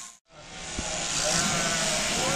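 Electric sheep-shearing handpiece running steadily through a sheep's fleece, with a sheep bleating in the second half. A brief dropout to silence comes just after the start.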